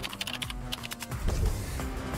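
Computer keyboard typing: a quick run of key clicks in the first second, then a few scattered clicks, over soft background music.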